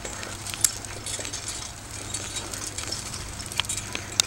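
Bicycle rolling along a concrete path: a steady low hum with scattered light ticks and clicks, a couple of them sharper.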